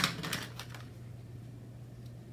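A decorative paper card handled and pressed down onto a notebook page: a sharp tap right at the start, then a few light clicks and paper rustles within the first second, after which only a faint steady hum remains.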